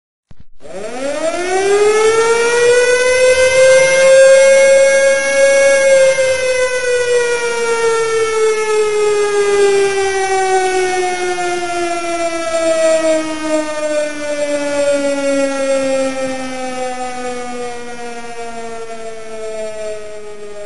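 Air-raid siren winding up to a high wail within a few seconds, holding briefly, then slowly winding down in pitch.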